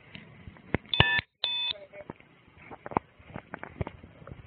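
Two short electronic beeps about half a second apart, each lasting a fraction of a second. Scattered light knocks and clicks sound around them.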